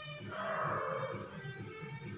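Background music with guitar and a steady repeating beat. About a third of a second in, a single short mid-pitched, voice-like cry lasting about a second sounds over it.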